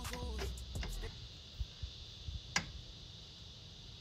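A few faint, sharp metallic clicks, the loudest about two and a half seconds in, from a breaker bar and socket being strained on a wheel-hub stud conversion whose threads are stripping.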